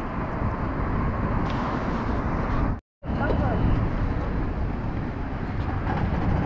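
Street traffic noise: cars passing on a road, a steady rush of engines and tyres. It drops out to silence for a moment about halfway through.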